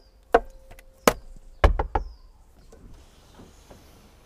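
A handful of sharp knocks and clicks, the loudest and heaviest cluster about one and a half to two seconds in, then quiet handling noise.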